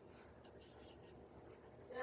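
Near silence with a few faint, soft rubbing strokes: fingertips blending cream makeup into the skin of the face.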